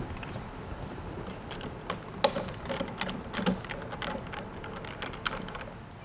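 Irregular small clicks of a hand tool tightening a Yakima roof-rack tower's clamp down onto its aluminium crossbar, the sharpest click about two seconds in.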